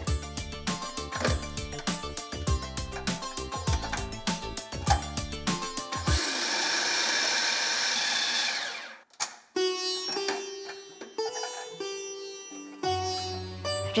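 Background music, with a food processor blending a sweetmeat mixture of milk powder, icing sugar and condensed milk for nearly three seconds from about six seconds in; the motor then cuts off and the music carries on.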